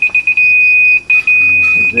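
Laser level receiver on a grade rod beeping a single high tone: rapid beeps at first, then a long steady tone broken briefly about a second in. The steady tone is the receiver's on-grade signal, meaning the rod sits right at the laser's height.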